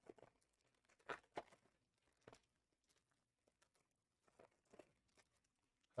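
Near silence broken by a handful of faint, brief rustles and clicks of trading cards and foil card-pack wrappers being handled.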